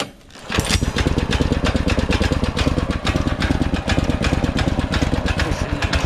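Honda GXV390 single-cylinder overhead-valve engine pull-started with the recoil starter: a short burst from the pull, then the engine catches about half a second in and runs steadily on choke at low throttle.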